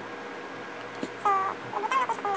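Short pitched animal calls: one held call a little after a second in, then a few quick shorter calls near the end.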